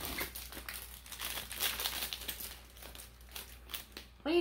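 Plastic packaging crinkling as it is handled, a run of irregular rustles and crackles that thin out in the second half.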